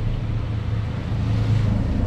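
Aquarium filter pump running: a steady low hum with the even rush of water flow.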